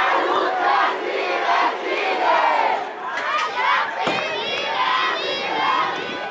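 Crowd of protesters shouting, many voices yelling over one another at once.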